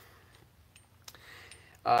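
Near quiet with a few faint clicks from cork rings being turned and lined up on a threaded metal mandrel, then a man's brief 'uh' at the very end.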